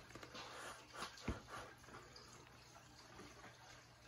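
Faint short puffs of breath blown onto wet acrylic pouring paint to push it outward into a bloom, several bursts of air in the first two seconds. A low thump about a second and a quarter in is the loudest sound.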